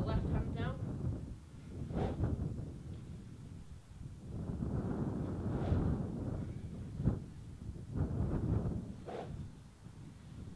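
Wind buffeting the microphone in uneven gusts, with a short snatch of a man's voice at the start and a single sharp knock about seven seconds in.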